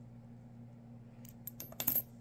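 Copper one-cent coins clicking against one another as gloved fingers slide them apart, with a quick cluster of sharp clicks in the second half, loudest near the end, over a steady low hum.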